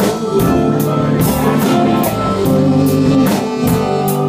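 Live band playing a blues number, with electric guitars and a drum kit keeping a steady beat.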